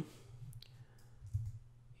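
A few faint clicks from computer input during desktop work, over a low steady hum.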